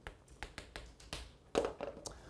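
Chalk tapping and clicking against a chalkboard as a word is written by hand: a quick run of short sharp taps, the loudest about three-quarters of the way through.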